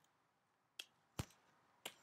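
Three separate sharp clicks of computer keyboard keys, the middle one the loudest, in near silence.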